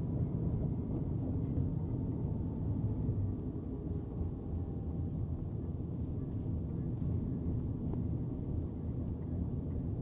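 Steady low road noise inside the cabin of a Tesla Cybertruck driving under its own control: tyre and wind rumble with no engine note, as the truck is electric.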